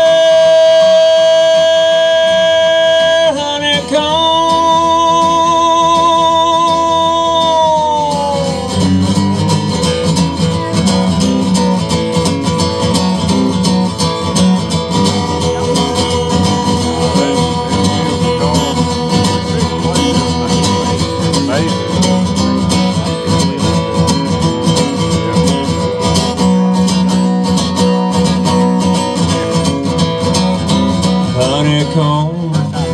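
A man's voice holds a long sung note with vibrato over strummed acoustic guitar, breaking briefly a few seconds in, then gliding down and ending at about eight seconds. Solo acoustic guitar strumming in a country rhythm follows for the rest of the time.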